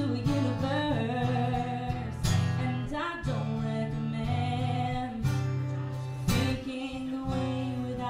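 A woman singing a slow melody while strumming an acoustic guitar, performed live.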